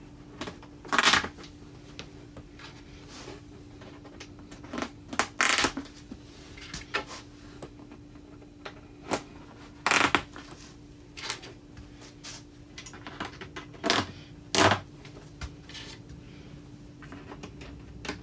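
Plastic locking pins of an IKEA EKET cabinet pressed into the holes along its panel edges, each one snapping home with a sharp click. About half a dozen clicks come a few seconds apart, with fainter knocks of handling between them.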